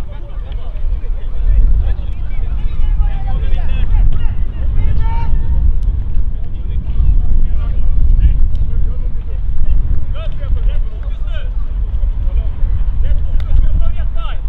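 Wind buffeting the microphone as a loud, uneven low rumble, with distant voices calling out now and then from the football pitch.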